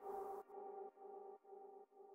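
Closing bars of a bass house track: a held synth chord pulsing about twice a second and fading out. Its bass and high end are filtered away about half a second in.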